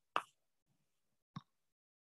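Two brief sudden clicks about a second apart, the first louder, with silence between them.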